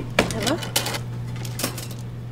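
Mostly speech: a short spoken greeting in French. Under it runs a steady low hum, with a few short sharp clicks about a second in and near the end.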